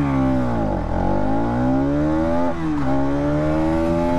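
Bajaj Pulsar NS200's 199.5 cc single-cylinder engine at full throttle, pulling away from a standstill in first gear. The note dips briefly, then climbs steadily, drops at an upshift about two and a half seconds in, and climbs again near the end.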